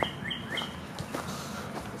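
Footsteps on dry leaf litter and twigs, giving a few sharp snaps and rustles, the loudest right at the start. A bird chirps in quick repeated short notes during the first part.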